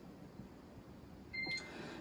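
A single short electronic beep, one steady high tone about a quarter second long, about one and a half seconds in: the tone that marks a transmission on the mission's radio communications loop. Before it, only faint hiss.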